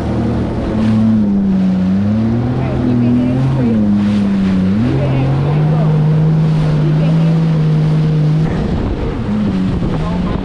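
Jet ski engine running at speed, its pitch rising and falling with the throttle, then holding steady for a few seconds before dropping away near the end, with wind buffeting the microphone and water spray.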